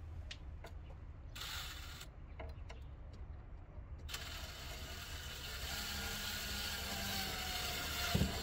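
DeWalt cordless drill/driver running under load as it drives a fastener: a short half-second run about one and a half seconds in, then a longer continuous run from about four seconds in.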